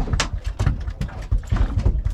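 A freshly landed snapper flapping on the boat's floor: quick, irregular knocks and thumps, about four or five a second.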